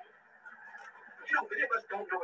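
A man's voice on an old audio recording, resuming after a brief pause about a second in, with a faint steady hum from the recording underneath.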